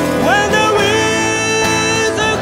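Music: acoustic guitar, keyboard piano and bowed esraj playing together, with a melody line that slides up into a long held note about a quarter-second in.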